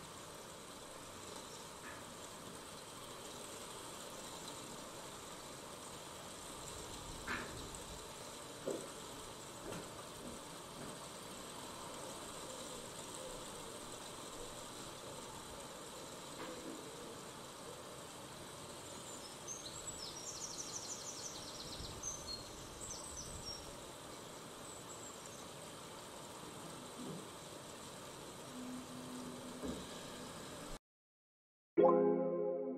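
Steady outdoor rush of a shallow river flowing over rocks. A bird sings a rapid high trill about twenty seconds in, and there are a few soft knocks.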